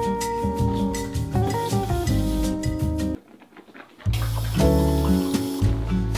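Background music with guitar. It cuts out about three seconds in and comes back a second later with a heavier bass line.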